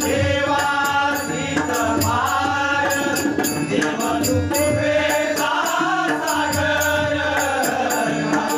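Male voices singing a Marathi abhang, a devotional bhajan, to pakhawaj and tabla drumming, with a steady beat of short high percussion strikes.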